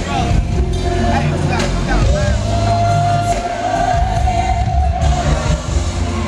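Live R&B band playing, with bass guitar and drums, under a male lead vocalist singing into a handheld microphone. Through the middle a long high note is held for about two seconds with a slight waver.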